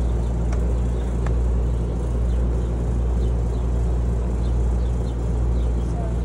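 A loud, steady, low mechanical hum with an even droning tone that does not change.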